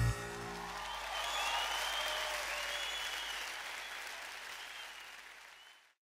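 Audience applauding just after the song's last chord stops, with a few high whistles over the clapping, slowly fading out toward the end.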